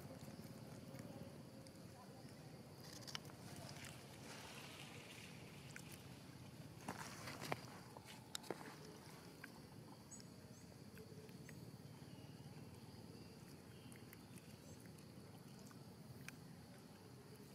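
Near-quiet outdoor background hiss, broken by a few faint clicks and scuffs, the sharpest about seven and a half and eight and a half seconds in.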